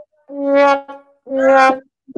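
Brass horn sound effect played from a soundboard: two short held notes at almost the same pitch, then a longer, slightly lower, wavering note starting at the very end, as a comic punchline.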